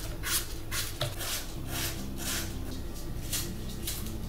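Small knife cutting a peeled apple held in the hand into small pieces: short crisp cuts about twice a second, over a steady low hum.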